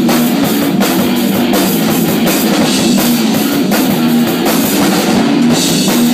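A live rock band playing loud and without a break: electric guitar over a pounding drum kit, heard up close in a small room.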